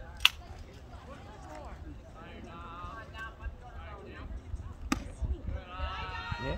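Background voices of people talking. A sharp, loud click comes about a quarter second in, and another sharp crack near the five-second mark.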